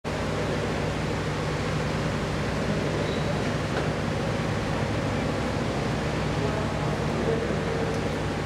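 Steady room noise: an even hiss over a constant low hum, with no clear events.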